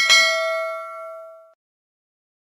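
Notification-bell sound effect: a click, then a single bright ding that rings out and fades away within about a second and a half.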